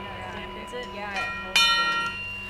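Steady ringing tones hang on at a moderate level in a punk band's album track, with faint voices under them. About one and a half seconds in, a bell-like chime is struck and rings on.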